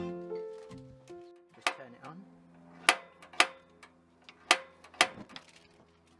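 Background piano music that fades out about a second in, then five sharp clicks of a Char-Broil gas grill's push-button igniter being pressed to light the burners, over a low steady hum.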